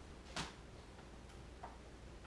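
A sharp click about half a second in and a fainter click near the end, over quiet room tone.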